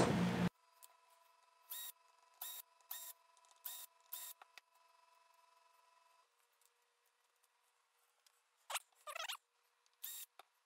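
A cordless screw gun runs steadily and cuts off about half a second in while it backs screws out of the PDU's receptacles. After that all is faint: five short sharp sounds between about two and four seconds in, and a brief wavering whine near the end.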